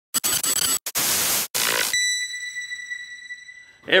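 Logo intro sound effects: a few loud bursts of harsh noise like static, broken by short silences, then one bright ringing tone that fades away over about two seconds.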